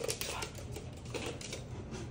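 Dog claws clicking and scrabbling on a hardwood floor during play between a puppy and a larger dog: a quick cluster of clicks at the start and a few more about a second in.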